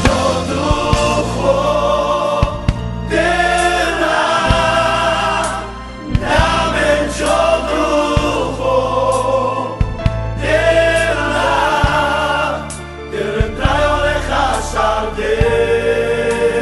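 Gospel song: voices singing together in long, wavering phrases over a steady bass line and a regular drum beat, with short breaks between phrases about six and twelve seconds in.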